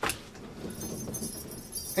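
A sharp click, then rustling with light metallic jingling and clinking as small camping gear is handled.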